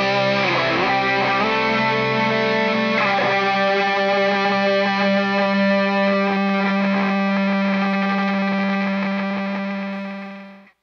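Distorted electric guitars of a live rock band: bent, wavering notes, then about three seconds in a final chord struck and held, ringing on and fading away near the end.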